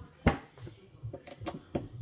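A single sharp knock about a quarter second in, a hard object set down on the countertop, followed by a few light clicks and taps as things are handled.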